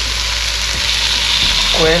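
Marinated quail sizzling steadily in a wok of hot fat with fried onions and masala as the birds are laid into the pan, with a brief spoken word near the end.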